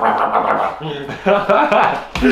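A man's voice making unclear talk or vocal noises to a dog that he is holding, louder in the second half.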